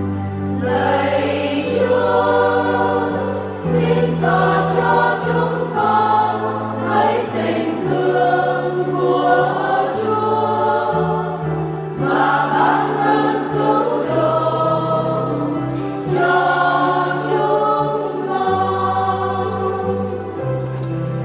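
Church choir singing a Vietnamese responsorial psalm over instrumental accompaniment, with held bass notes that change every one to two seconds.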